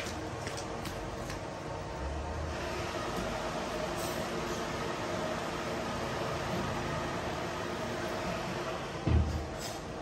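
Electric pet-drying cage running, its two built-in fans blowing steadily with a whoosh of air. A short dull thump comes near the end.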